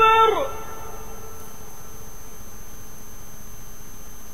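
Muezzin's maghrib call to prayer (adhan): a held, melismatic sung phrase slides down in pitch and ends about half a second in. A pause between phrases follows, with only a steady background hum.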